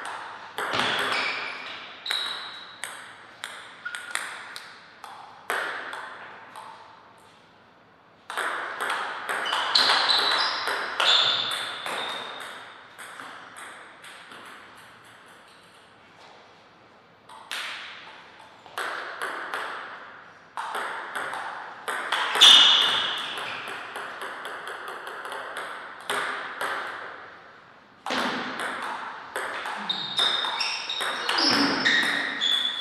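Table tennis rallies: the plastic ball clicking off rubber paddles and bouncing on the table in quick alternating strokes. Bursts of play near the start, from about 8 to 12 seconds and again from about 17 seconds on, with quieter pauses between points.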